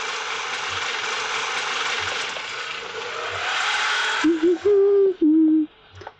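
An auto-rickshaw's engine running, with a whine that rises towards the end of it. About four seconds in, the engine sound stops and a woman hums a tune in long held notes.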